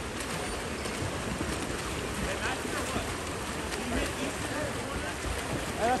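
Water polo players splashing as they swim across an outdoor pool, a steady wash of water noise with faint distant voices of spectators and players.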